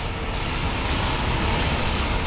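Downtown street noise: a steady rush of passing traffic with a low rumble.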